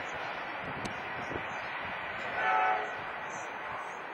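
A train horn gives one short blast about two and a half seconds in, over the steady running noise of a train on the track.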